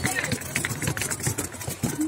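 Street background noise: a vehicle engine running, with faint voices mixed in.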